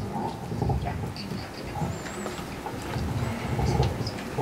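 Low room noise in a meeting hall during a lull: indistinct rumbling and shuffling, with a brief faint high whistle about two seconds in.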